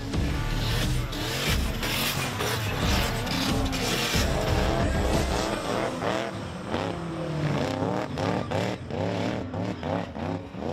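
Car engines revving and tyres squealing as cars slide on a wet track, mixed with an electronic remix music track. The heavy low rumble drops out about five and a half seconds in, leaving wavering squeal-like tones over the music.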